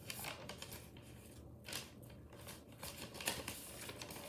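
Paper rustling in irregular short crackles as a sheet of notes is handled.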